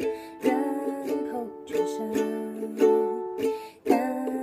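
Ukulele strummed in chords, a fresh strum roughly every second with the notes ringing on between strums.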